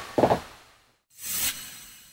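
A man's heavy sigh into a close studio microphone just after the start, then about a second later a short whoosh sound effect that fades away.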